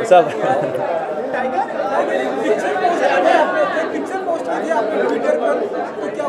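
Several voices talking over one another in a large hall, a steady chatter with no single voice standing out.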